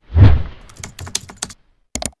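A low thump, then a quick run of computer-keyboard key clicks, about eight in under a second, and a last double click near the end: a typing sound effect for text being entered into a search bar.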